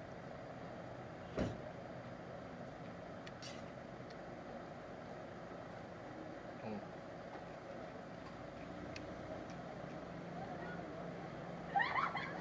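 Steady background hum of street traffic, with one sharp click about one and a half seconds in and a few faint ticks later.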